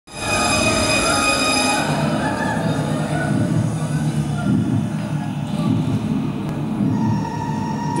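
Stage soundscape for the burning scene: a dense, churning low rumble, with several high steady tones over it that fade out about two seconds in, and a single mid tone entering near the end.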